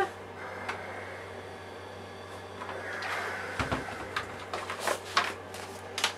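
Paper and fabric handled on a wool pressing mat while a steam iron is lifted and set aside: a soft thump a little past halfway, then a run of short rustles and small knocks as the paper guide is slid out.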